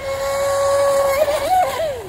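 RC boat's 4000 kV electric motor and propeller whining steadily at speed. The pitch wavers and briefly rises about a second and a half in, then drops near the end.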